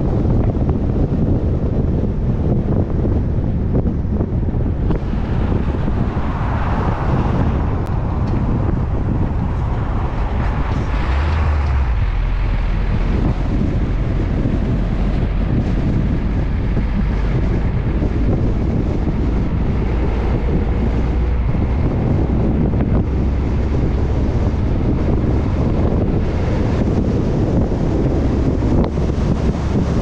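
Steady wind rushing over a GoPro microphone mounted high on a minibus carried on a moving car transporter, with low road and truck noise underneath.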